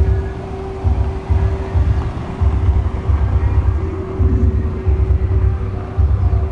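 Loud bass-heavy 'pancadão' music from a sound system, deep bass thumps pulsing every half second or so over a steady hum. This is the sound-system noise that neighbours complain of as a disturbance.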